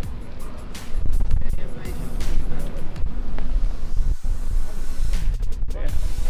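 Wind buffeting the microphone in a low, uneven rumble, under background music.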